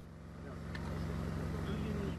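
Field sound of a low, steady engine hum, growing slightly louder over the first second, with faint voices in the background.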